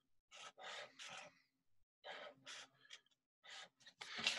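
Felt-tip marker drawing across paper in several short, faint strokes, its tip scratching on the sheet.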